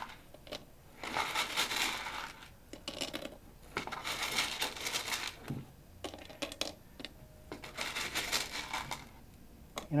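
Small broken pieces of clear glass clinking as they are picked up by hand and dropped into a ceramic bisque tile mold, in three bursts of rapid little clicks.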